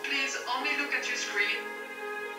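A voice speaking over a video call, over background music of steady sustained notes; the speech stops about one and a half seconds in and the music carries on.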